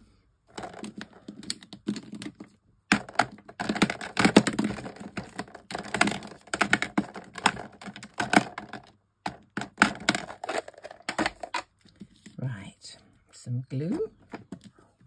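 Rapid, irregular clicking and clattering of plastic pens and markers being picked up and moved about on a craft desk. A brief murmur of voice comes near the end.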